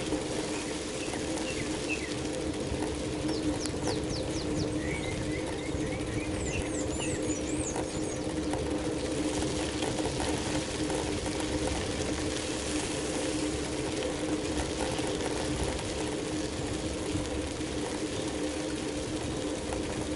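Steady hum of a bicycle rolling along an asphalt road, holding one low tone, with birds chirping several times during the first half.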